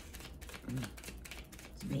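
A deck of oracle cards being shuffled overhand, the cards flicking against each other in quick, irregular clicks.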